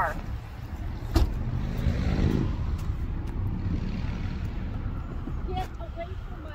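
A patrol SUV's engine running with a steady low rumble, a sharp click about a second in, and a brief rising hum a second later.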